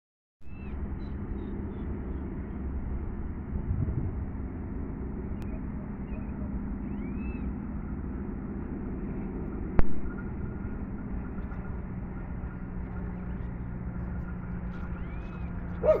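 Steady outdoor background rumble with a faint hum, a few faint bird chirps, and a single sharp click about ten seconds in. A dog starts barking right at the end.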